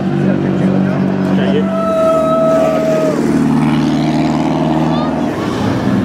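Engines of vintage cars running as they drive off one after another, over crowd talk. A held tone sounds for about a second, two seconds in.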